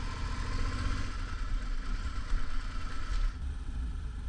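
Suzuki V-Strom 650's V-twin engine running at low speed, a steady low rumble heard from on the bike; the sound shifts about three seconds in.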